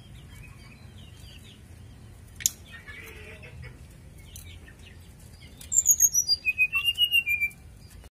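Caged sirdadu songbird calling: faint chirps, then about six seconds in a loud, rapid run of short notes falling in pitch. A single sharp click comes about two and a half seconds in.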